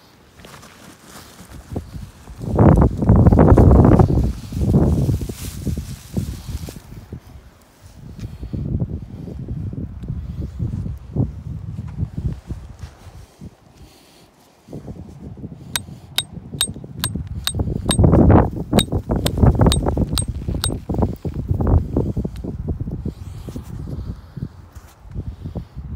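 Handling noise from a phone camera being moved and set in place: bursts of rubbing and rustling against clothing, a bag and loose shale. Past the middle comes a run of about a dozen sharp, evenly spaced clicks, two or three a second.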